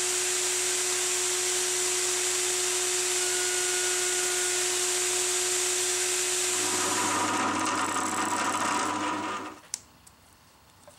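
Table-mounted router running at full speed with a bearing-guided trim bit, a steady high whine, as the edge of a small pickup cover blank is trimmed against the bearing. The sound changes about seven seconds in and cuts off suddenly near the end.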